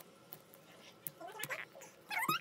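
Faint clicks and scratches of small fingers picking at a plastic capsule ball, with a young child's brief high-pitched murmur about a second and a half in.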